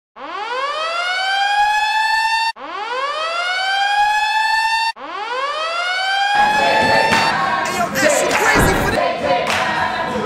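A siren-like wind-up sound effect played three times in a row: each one climbs in pitch, levels off and cuts off abruptly. From about six seconds in, a loud noisy stretch with sharp knocks takes over.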